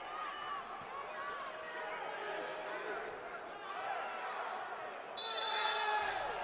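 Indoor 3x3 basketball play: sneakers squeaking and a ball bouncing on the court over crowd noise. About five seconds in, a referee's whistle blows a steady, shrill blast as the ball goes out of bounds.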